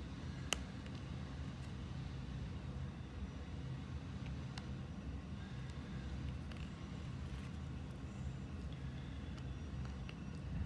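A sharp plastic click about half a second in as a Lego wheel is pressed onto its axle, then a fainter click a few seconds later, over a steady low rumble.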